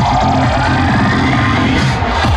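Loud electronic dance music: a synth sweep rises steadily in pitch over a thinned-out low end, and the heavy bass beat comes back in at the end.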